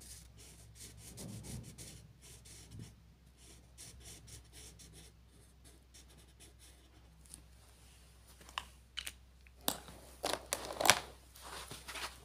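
Felt-tip marker rubbing across paper in quick back-and-forth strokes, colouring in a shape. Near the end come a few louder sharp clicks and knocks, the loudest about eleven seconds in.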